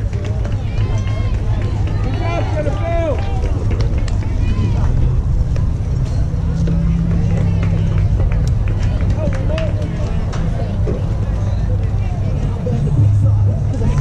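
Scattered voices of players and spectators at a youth baseball game, calling out and chattering, over a steady low rumble.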